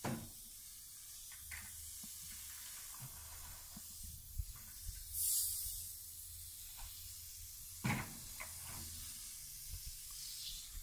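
Aerosol can of Tuff Stuff foam upholstery cleaner spraying onto a fabric seat cover in a steady hiss that grows louder for about a second some five seconds in. Light knocks come near the start and about eight seconds in.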